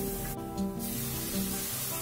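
Background music with a steady melody, over the hiss of masala frying in oil in a steel kadai. The hiss drops out briefly about half a second in.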